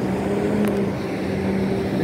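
A man's drawn-out 'uhh' held on one steady pitch for almost two seconds, over a low background rumble.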